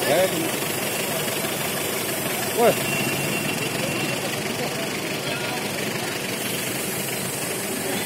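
Busy street ambience: vehicle engines idling under the chatter of a crowd, with short loud voices near the start and again about two and a half seconds in.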